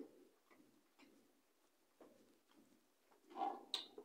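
Faint clicks and taps of a metal spoon against a plastic Pot Noodle pot as she scoops, with a short, louder mouth sound while eating about three and a half seconds in.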